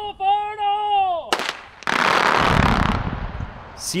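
A steady warning horn sounds, breaks off briefly, then cuts off about a second in. A sharp crack follows, then a loud, deep boom of about a second: underground explosives detonating in rock drilled 25 feet deep.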